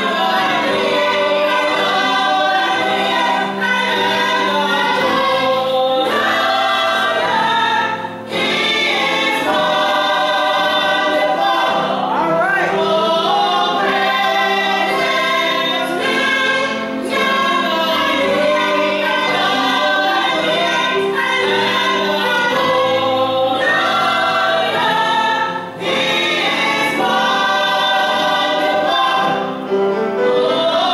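A small group of singers singing a gospel song together, in phrases with brief breaks between them.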